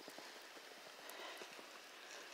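Faint, irregular soft crunches of snow in near quiet.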